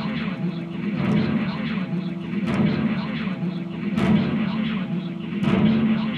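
Harsh noise music: a dense, distorted wall of noise from effects pedals and an amplifier, swelling in a rough pulse about every second and a half over a steady low drone.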